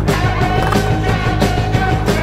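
Rock music track playing, with a skateboard's wheels and board on a concrete ledge heard underneath.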